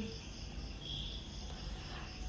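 Faint room tone between spoken sentences: a low steady hiss with a thin, faint high-pitched tone running through it.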